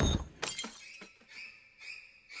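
Film sound effects: a sudden crash-like hit that fades over about half a second, followed by a few faint clicks and a thin, high, steady ringing tone.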